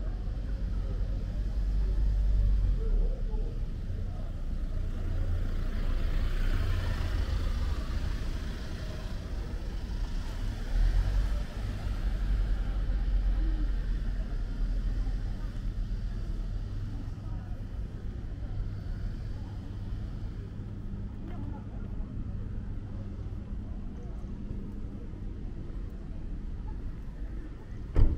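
City street ambience: a low, continuous rumble of car traffic, swelling louder in the middle.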